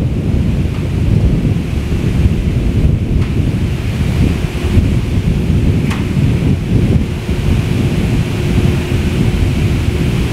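Wind buffeting the camera microphone: a loud, continuous low rumble.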